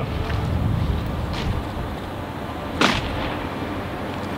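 Honour guard company carrying out the shoulder-arms drill in unison: a sharp crack of hands slapping rifles about three quarters of the way in, with a fainter one earlier, over a steady outdoor rumble.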